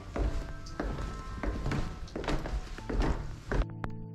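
A handful of irregular thuds and knocks, like footsteps, over a noisy room background with faint music. A little before the end the sound cuts abruptly to soft background music of steady held notes.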